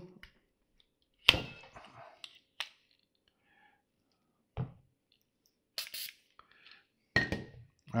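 Scattered clicks and knocks as a needle-type wine preserver is worked on and lifted off a wine bottle's neck, and the glass bottle is set down on a table. There is a sharp click about a second in, a dull knock midway, and two sharp clicks near the end.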